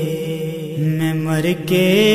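A man's voice singing a naat in long, drawn-out held notes, with a quick rising slide in pitch about halfway through.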